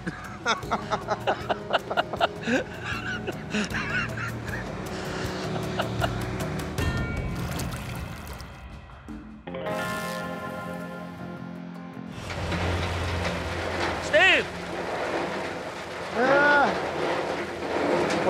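Men laughing, then a music bed with sustained chords over a scene change; from about two-thirds of the way through, the low steady rumble of a gold wash plant's trommel running, with two short pitched calls over it.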